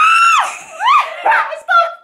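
High-pitched shrieks of laughter from a woman being tickled under the arm and a young boy: one long shriek at the start, then shorter squeals that swoop up and down.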